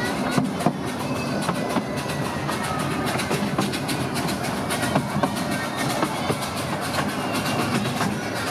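Miniature steam train running slowly past, its wheels clicking and clattering irregularly over the track.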